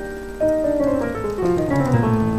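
Yamaha digital keyboard played with a piano sound: a held chord fades, then about half a second in a chromatic run descends in quick, even steps down toward the low A.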